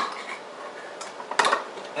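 Metal clinks from a stand mixer's stainless steel bowl and beater being handled and unlocked to take them off the mixer, two sharp clicks about a second in and near 1.5 s.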